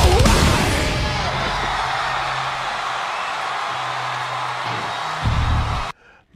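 Playback of a live heavy-metal concert recording. The band's loud playing stops at the start, leaving a large crowd cheering over a low, steady hum. A loud low rumble comes in near the end, and then the sound cuts off abruptly as the playback is paused.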